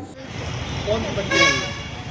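A vehicle horn gives one short toot about a second and a half in, over a steady low background of street traffic.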